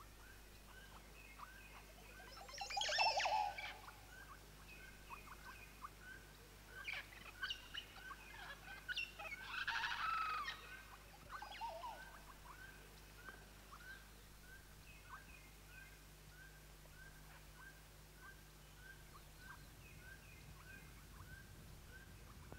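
Oropendolas calling: a steady series of short chirps about twice a second, with louder, fuller calls about three seconds in and again about ten seconds in.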